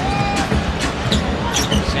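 Basketball being dribbled on a hardwood court, a string of short bounces, over steady arena crowd noise.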